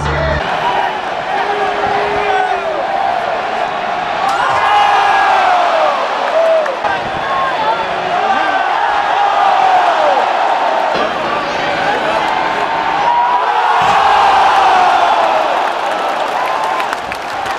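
Big stadium crowd cheering and yelling, many voices shouting over one another, swelling several times and loudest near the end.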